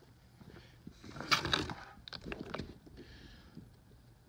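Handling noise from a plastic quart bottle of automatic transmission fluid being picked up: a short cluster of knocks and scrapes about a second in, then a few lighter clicks.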